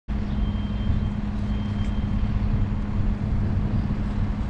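Steady low outdoor rumble with a constant low hum running through it, and a faint thin high whine twice in the first two seconds.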